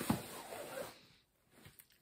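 Rustling of a hand rummaging inside the front fabric pocket of a soft-shell suitcase, with a couple of light knocks at the start, fading out about a second in, then a few faint clicks near the end.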